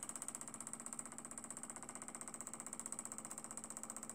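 Small homemade Stirling engine running steadily, its flywheel, crank and piston linkage making a faint, rapid, even ticking of about ten beats a second.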